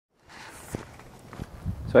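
A few soft thumps over a steady outdoor hiss, with a man's voice beginning to speak at the very end.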